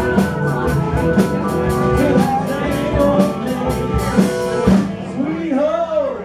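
Live rock band playing: drum kit, electric and acoustic guitars and keyboard with a singer. The drums drop out near the end, leaving held notes that bend in pitch.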